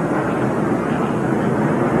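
Stock car V8 engines running steadily: an even, unbroken drone.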